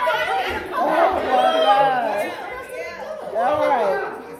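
Speech only: people talking in a large hall, with more than one voice.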